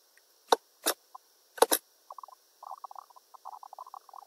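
Computer mouse clicks: three sharp clicks in the first two seconds, the last a quick pair, followed by faint irregular crackling.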